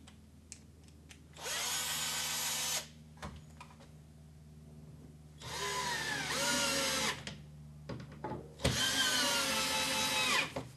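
Cordless drill driving screws through a plastic shelf bracket into wall plugs, running in three bursts of about a second and a half each. The motor's whine dips in pitch during the later two bursts, with small clicks of handling in between.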